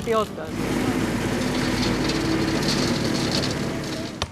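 Cordless drill-driver running steadily for about three seconds, driving a screw into a metal frame.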